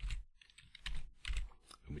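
Computer keyboard typing: a few quick keystrokes as letters are typed into a text field.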